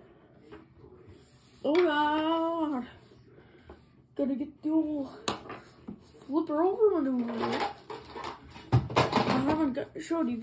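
A young person's voice making wordless vocal sounds: a drawn-out note about two seconds in, then several shorter bending hums and breathy noises.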